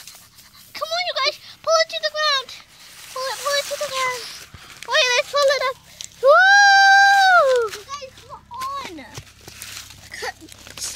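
A child's high-pitched, squeaky wordless vocal noises: several short wavering squeals, then one long held squeal about six seconds in.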